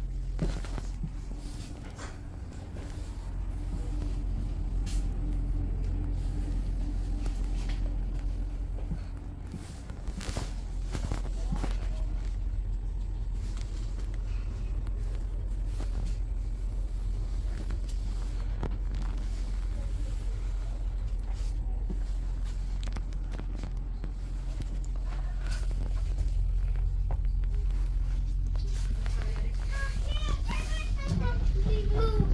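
Steady low hum inside a standing X60 electric commuter train (Alstom Coradia Nordic), from its onboard equipment and ventilation running, with a few scattered faint clicks.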